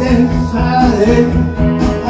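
A man sings a rock song into a microphone over amplified guitar-led backing music.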